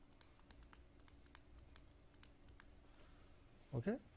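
Faint ticks and light scratches of a pen writing a word by hand on paper, a few ticks a second. A brief voice sound comes just before the end.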